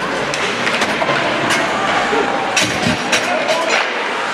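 Live ice hockey play in an echoing rink: skates scraping the ice and sharp clacks of sticks and puck, coming thicker in the second half, over the voices of players and spectators.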